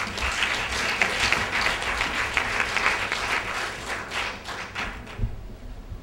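Audience applauding, the clapping thinning out and fading away near the end.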